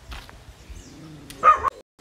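A dog barks once, short and loud, near the end, and the sound then cuts off abruptly.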